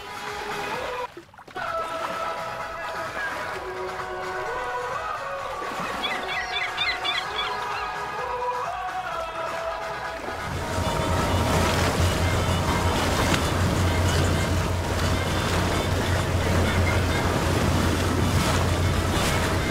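Background music for the first ten seconds or so, then louder outdoor sound takes over: water and wind noise with a low steady hum, typical of boats idling at a crowded sandbar, while the music carries on faintly underneath.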